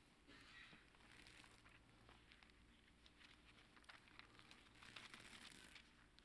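Faint rustling and crinkling of thin Bible pages being leafed through by hand, the pages sticking together.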